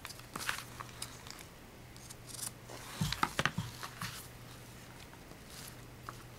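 Chipboard and fabric being handled and shifted on a cutting mat: scattered paper rustles and light taps, with a cluster of louder knocks about halfway through.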